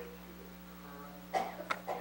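A person coughing: one cough somewhat past the middle, then two quick shorter coughs near the end, over a steady electrical hum.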